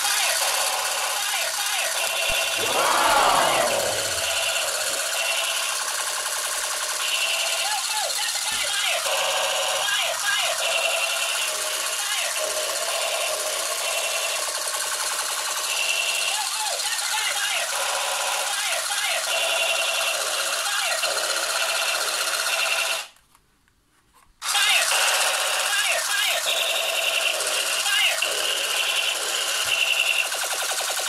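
Battery-powered toy M4A1 musical gun playing its built-in electronic sound effects: a rapid machine-gun rattle mixed with voice-like samples, with a falling whistle about three seconds in. The sound cuts out for about a second and a half a little over twenty seconds in, then starts again.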